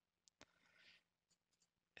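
Near silence, broken by two faint mouse clicks in the first half-second and a faint soft hiss just after.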